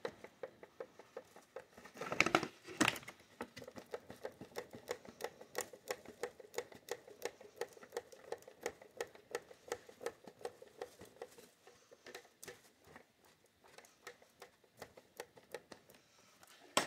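Folding hand fan waved fast in front of the face, its pleats making quick, even flaps, with a louder rustle about two seconds in.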